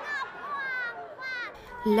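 A woman's shrill, high-pitched stage voice calling out in a few short falling phrases, followed near the end by a calmer narrating voice beginning to speak.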